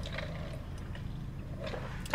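A steady low rumble inside a car cabin, with a few faint sips through a straw from a plastic iced-coffee cup.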